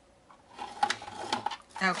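Fiskars paper trimmer's blade carriage clicking along its plastic rail and kraft cardstock scraping as the sheet is pulled off the trimmer: a run of clicks and scrapes starting about half a second in.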